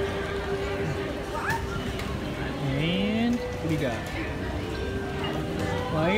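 Background music with steady held notes, mixed with the voices of other people talking.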